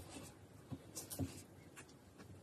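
A silicone spatula stirring a crumbly flour, oil and yogurt dough in a glass bowl: a few faint, short scrapes and taps against the glass.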